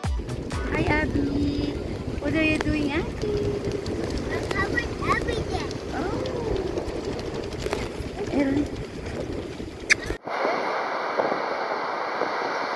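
Wind buffeting the microphone on a beach, with a woman and small children talking over it. After a sudden cut about ten seconds in, it gives way to a steady hiss of wind and surf.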